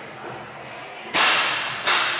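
Two sharp cracks about 0.7 s apart, each with a short echo as in a large hall.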